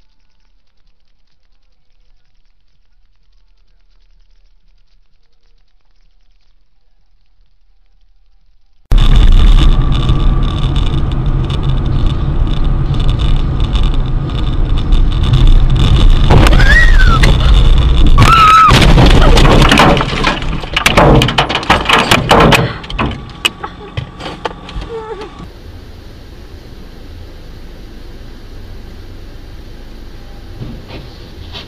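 Car dashcam audio: near silence for about nine seconds, then loud road and engine rumble inside the car cuts in suddenly, with a thin steady whine over it. Just past the middle come two brief rising-and-falling squeals, then a cluster of sharp bangs and knocks, the sound of a crash. After that the rumble drops to a lower, steadier level.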